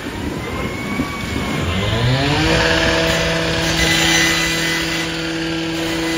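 An engine speeds up over about a second, starting about a second and a half in, then holds a steady high speed.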